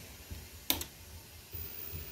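A power circuit breaker switched on with a sharp double click about two-thirds of a second in, energising a servo-driven linear actuator setup. About a second later a faint, very high-pitched steady whine starts as the electronics power up.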